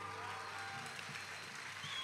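The faint tail of an electric rock band's final chord dying away over a low, steady stage hiss.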